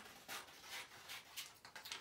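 A few faint snips of scissors cutting through paper, with light paper rustling.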